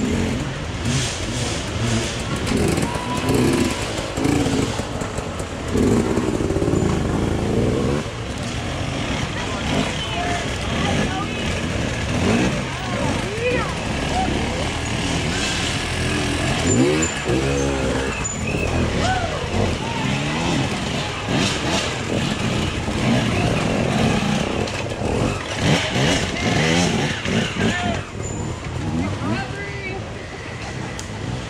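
Dirt bike engines revving up and down unevenly as riders pick their way up a rocky climb, with spectators talking and calling out throughout.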